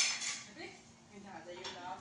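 Dishes and cutlery clattering at a kitchen counter: a sharp, loud clink right at the start with a brief ring, then fainter handling noises, with voices in the background.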